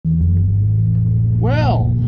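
Pickup truck engine running, heard from inside the cab as a steady low drone.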